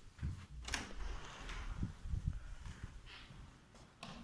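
Faint, irregular low thumps of footsteps and handheld camera handling, with a sharp click just under a second in.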